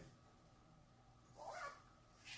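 Near silence: room tone, broken by one brief high-pitched vocal sound about one and a half seconds in.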